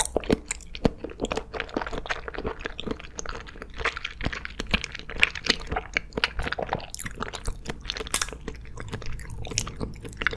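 Close-miked chewing of gummy jelly candy: a steady stream of small wet clicks and smacks from the mouth, several a second.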